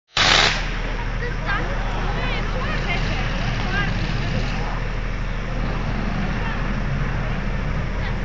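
Outdoor crowd voices over a steady low hum, with a brief loud burst at the very start.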